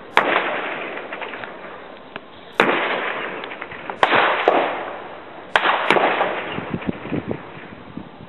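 Distant weapons fire in a battle: about five loud, sharp reports spread over several seconds, two of them close together near the end, each followed by a long rolling echo.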